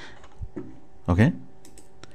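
A few short clicks of a computer mouse near the end, with a low thump about half a second in and a single brief spoken syllable just past the middle.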